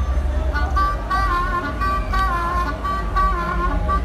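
Harmonica played through a corded microphone, a wavering melody of bent notes, with the low rumble of a vehicle passing close by.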